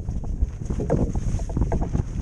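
Wind buffeting the microphone aboard a small wooden flat-iron skiff under sail: a steady low rumble with irregular slaps and splashes of water along the hull.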